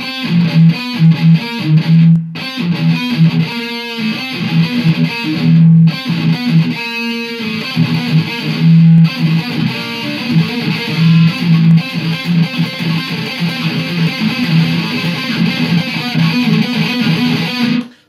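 Heavily distorted electric guitar playing a dark, heavy riff: chugging notes on the open lowest string between fifths played on the two thickest strings, stepping down the neck (13-15, 12-14, 11-13). The playing is continuous with two brief breaks and stops sharply at the end.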